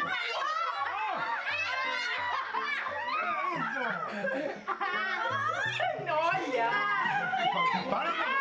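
Several children laughing and shouting at once over background music.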